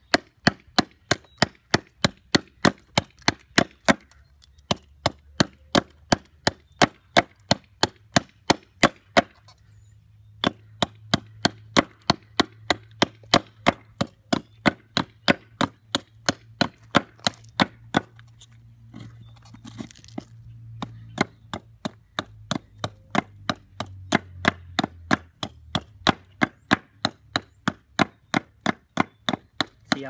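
Hatchet chopping a wooden spoon blank of century-old fence-post wood, held against a wooden board: quick, even strokes, about two to three a second, breaking off briefly a few times.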